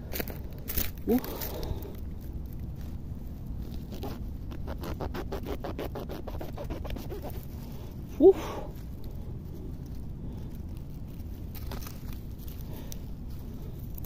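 Mushroom stems being cut at the base of a cluster of thistle oyster mushrooms (setas de cardo), a quick run of scraping and crackling through stem and soil from about four to seven seconds. A man breathes out an 'uf' about eight seconds in.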